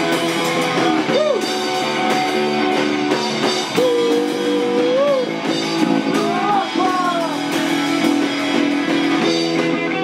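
Punk band playing live: loud electric guitar and drums, with cymbal hits throughout and a few sliding high notes in the middle.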